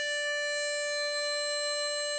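Chromatic harmonica holding one long, steady note at the opening of a slow tune.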